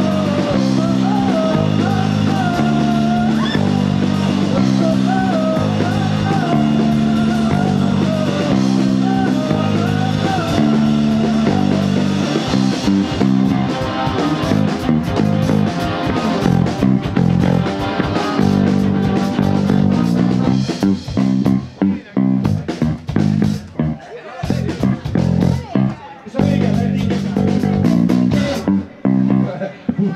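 Live rock band playing electric guitar, bass guitar and drums, with a woman singing over it at first. After the vocal drops out, the playing thins, and in the last third it turns choppy, with short stabs and gaps as the song winds down.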